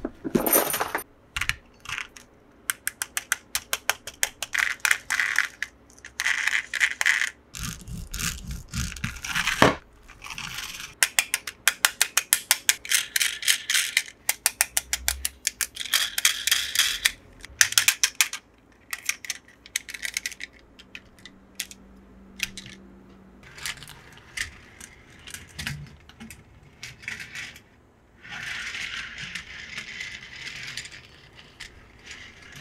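Toy packaging being opened and handled: fast runs of small plastic clicks and crackles, with a few dull knocks about a third of the way in.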